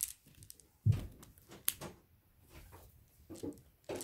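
Handling and snipping open a mesh net bag of glass marbles: scattered light clicks and rustles, with a soft thump about a second in.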